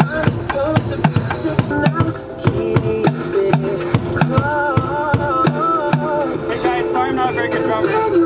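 A pop song with a sung melody playing from a portable CD player, with drumsticks striking upturned plastic water-cooler jugs in a steady beat along with it.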